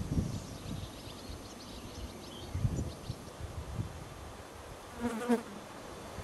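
A flying insect buzzing close to the microphone, coming and going, with a short, clearer buzz about five seconds in.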